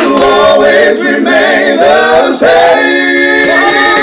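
One man's voice multitracked into a several-part a cappella gospel vocal arrangement, singing in close harmony and settling into a long held chord in the second half.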